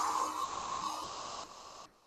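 A woman blowing out a long, hard puff of breath, acting out the big bad wolf's puff, a breathy hiss that fades away about a second and a half in.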